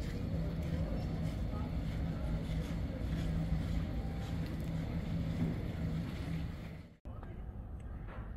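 Busy airport terminal ambience: a steady hubbub of distant voices and movement, with a low hum that comes and goes beneath it. It cuts off abruptly about seven seconds in, giving way to a quieter background.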